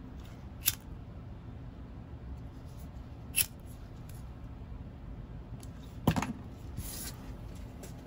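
Two short sharp clicks a few seconds apart from a small hand lighter used to singe the cut ends of grosgrain ribbon, then a louder knock and a brief ribbon rustle near the end as the bow is put down on the cutting mat.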